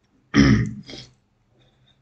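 A man clearing his throat, a loud rasp a little way in followed by a shorter second one.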